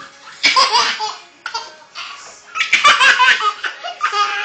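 A baby's hearty belly laughs, in two loud bouts: about half a second in and again near three seconds. He is laughing at scratching.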